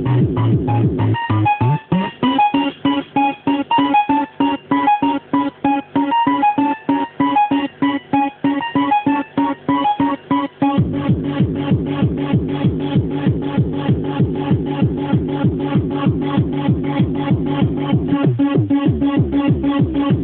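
Fast hardcore techno pattern played live on a Yamaha RM1x sequencer, with a kick drum at about three beats a second under a synth line. About two seconds in, the low bass layer drops out, leaving the kick and a higher synth riff. The full bass comes back in at about eleven seconds.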